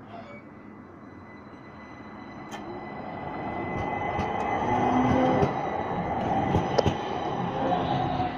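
Stadler low-floor electric tram pulling away from a stop. Its electric drive whines steadily and the wheels rumble on the rails, both growing louder over the first few seconds as it gathers speed. A few sharp clicks sound over the top.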